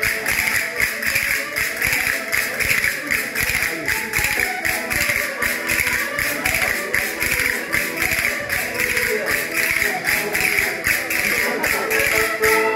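Diatonic button accordion playing a lively folk dance tune, with fast, even clicking and rasping from a ladder-shaped wooden scraper (reco-reco) and castanets keeping the rhythm.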